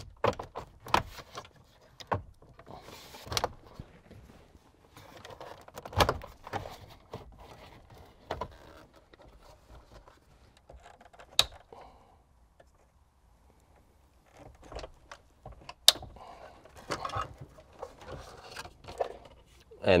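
Plastic clicks, knocks and rattles of a 5th-gen Toyota 4Runner's factory head unit and its dash trim surround being worked loose and pulled out of the dash, as scattered sharp clicks with a brief quiet pause in the middle.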